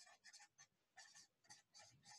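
A marker pen writing on a board: a quick series of short, faint strokes as letters are written.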